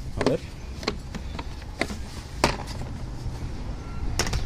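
A few sharp plastic clicks and knocks as a plastic cover panel in the engine bay is unclipped and worked free, the loudest about two and a half seconds in.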